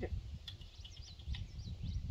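A small bird chirping, a quick run of short high chirps starting about half a second in, over a steady low rumble.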